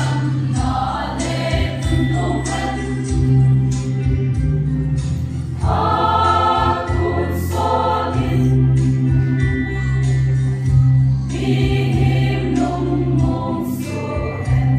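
Mixed choir of men and women singing a Christmas song in unison and harmony, accompanied by an electronic keyboard with a steady bass line and a light beat.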